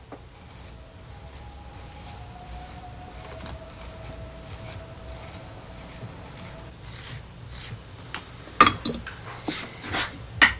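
Potter's knife shaving leather-hard clay from the base of a hand-built raku tea bowl, in short scraping strokes about two a second. A few louder knocks come near the end.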